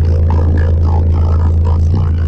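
Car-audio subwoofer (EDGE EDP122SPL) playing a loud, steady deep bass note from a song, with the car's interior trim rattling and buzzing against it.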